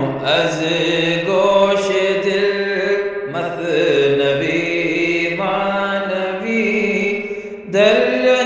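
A solo voice chanting in long, drawn-out melodic phrases, with a short break about three seconds in and another near the end.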